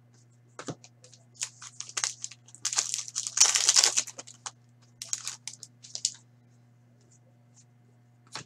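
Trading-card pack wrapper crinkling and being crumpled by hand as cards are pulled out, in a string of short crackles that swell into a dense crinkling burst in the middle, then stop about two seconds before the end.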